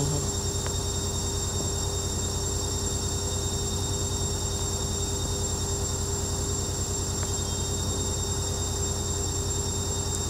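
A steady, unchanging droning hum with hiss, with a faint tick or two.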